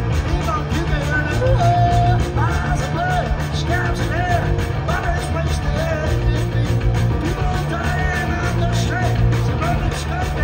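Punk rock band playing live through a stage PA: distorted electric guitar, bass and drums, with the lead singer's vocals over them.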